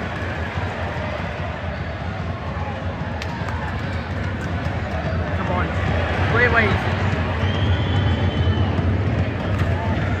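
Football stadium crowd noise from the stands during open play: a steady hubbub of fans, swelling a little, with a few short shouts from nearby spectators about six to seven seconds in.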